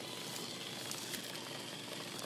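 Electric hand mixer running steadily, its beaters churning thick half-frozen ice cream mix in a plastic bowl, with a faint steady whine.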